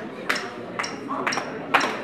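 Sharp clicks with a high ringing ping, evenly spaced at about two a second, like a count-in before a song, over a murmur of voices in a large room.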